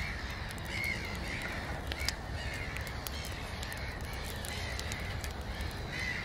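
Crows cawing several times over a steady background hiss, with scattered faint clicks.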